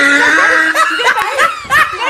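A woman's loud voice: a held cry lasting under a second, then short choppy laugh-like bursts.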